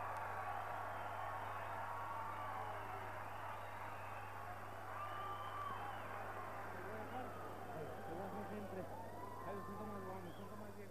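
Boxing arena crowd: a steady murmur of many voices, with a few single voices faintly heard above it, over a steady low hum.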